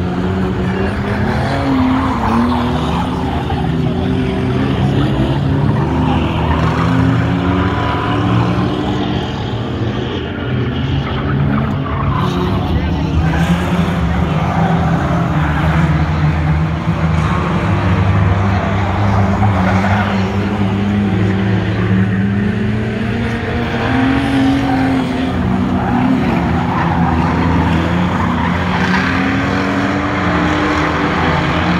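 Several streetstock race cars' engines running hard in a dirt-track race, their pitch rising and falling as they accelerate and lift through the turns.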